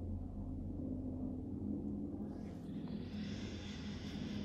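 A steady low electrical hum, with a long breath out starting a little past halfway.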